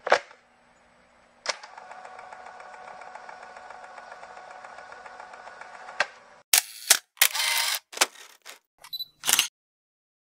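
Channel-intro sound effects: a click, then a steady electronic hum for about four and a half seconds ending in another click, followed by a run of about six short, sharp camera-shutter-like clicks and swishes.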